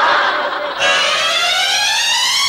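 Transition sound effect: a rush of noise, then, about a second in, a rising electronic tone with many overtones that glides steadily upward.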